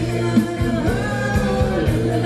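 Upbeat Thai ramwong dance music from a live band: a singer over a steady drum beat and bass.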